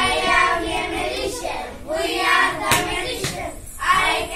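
A group of boys singing an action rhyme together, with a single sharp clap about two-thirds of the way in.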